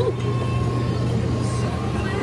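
A steady low mechanical hum with an even rumbling background, keeping the same level throughout.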